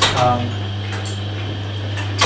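Church carillon machine's peg-drum mechanism, a steady low hum with a sharp metallic click at the start.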